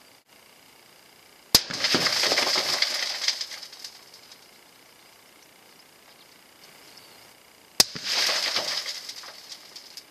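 Two rifle shots from a Sako rifle in 6.5x47 Lapua, heard from the target end, about six seconds apart. Each is a single sharp crack followed by about two seconds of trailing noise that dies away; the first is the longer and louder.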